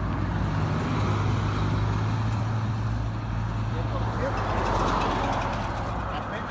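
A car driving by on a paved highway, its tyre and engine noise swelling about four to five seconds in, over a steady low hum.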